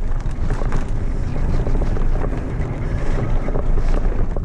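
Wind rushing over the camera microphone of a mountain bike descending a dirt trail at speed, with tyres rolling over dirt and rocks and frequent short rattles and knocks from the bike.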